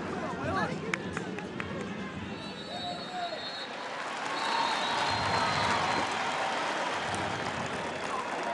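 Referee's whistle blown twice over steady stadium crowd noise: a blast of about a second, then a longer one of about two seconds.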